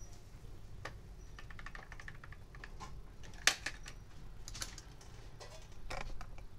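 Small plastic and metal clicks and taps as a CPU is set into the LGA 1155 socket of a Gigabyte H61 motherboard and the socket's load plate and retention lever are pressed shut. The loudest click comes about three and a half seconds in.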